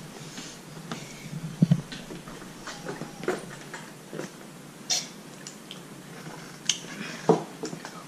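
Quiet sipping of Baikal soda through a plastic straw from a glass, with a few short soft slurps and mouth clicks spread through the pause.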